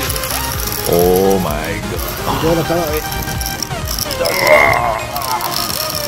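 Spinning reel clicking and whirring under load while a big hooked fish pulls against the bent rod, heard over background music and a few short voice-like sounds.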